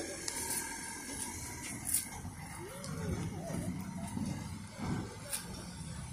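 Street ambience with a vehicle driving along the road, a low rumble building from about halfway in, and faint voices in the background.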